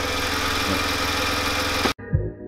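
Mercedes W210 engine idling steadily, running again after its no-start fault was traced to a broken ground cable and a failed K40/4 relay module. The sound cuts off abruptly just before the end.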